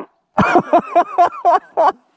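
A person laughing in a quick run of about six loud bursts.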